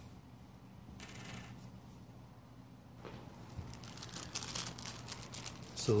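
Crinkling and rustling of a small plastic packet of replacement gears being handled, starting about halfway through and growing busier. A brief faint high-pitched sound comes about a second in.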